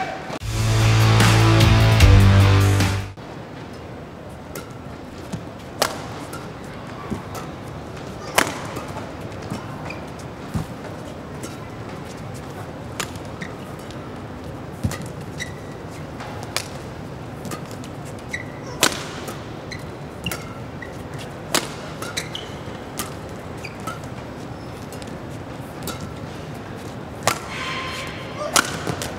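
A loud burst of music with heavy bass for about three seconds, then a long badminton rally: sharp cracks of rackets striking the shuttlecock every second or two over a steady arena hubbub.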